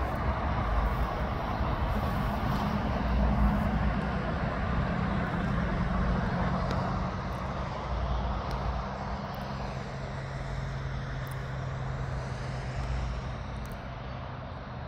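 Traffic on a nearby road: a vehicle engine's steady hum over road noise, slowly fading in the second half.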